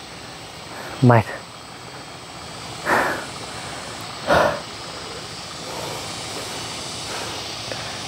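A man breathing hard and out of breath after a steep, slippery uphill walk: two heavy exhalations, about three seconds in and again a second and a half later, over a steady outdoor hiss.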